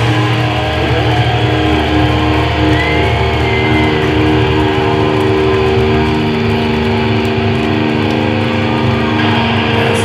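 Distorted electric guitars holding long, ringing notes with no drumming. This is typical of a metal band letting a chord ring out between or at the end of songs.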